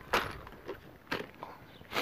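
A plastic parts box being closed up and handled: a few short plastic knocks and rustles, the first and loudest just after the start.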